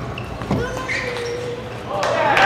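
Celluloid table tennis ball struck once with a sharp knock about half a second in, followed by a long held shout in the hall; applause breaks out at the very end.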